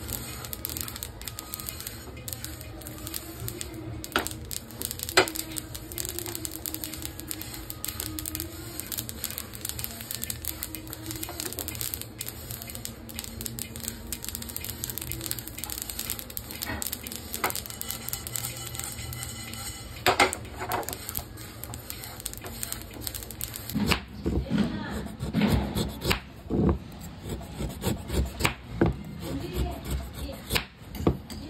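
Sesame seeds roasting in a non-stick pan, stirred with a silicone spatula: a fine, continuous crackle and scrape with a few sharper clicks over a low steady hum. Near the end this gives way to a knife chopping a block of jaggery on a wooden board, louder irregular knocks and scrapes.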